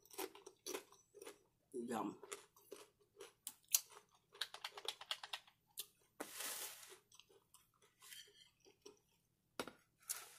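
Close-mic chewing of a crunchy mouthful of tortilla chips, with many short crackles and mouth clicks. About six seconds in comes a longer rustle as a small cardboard box of cards is handled.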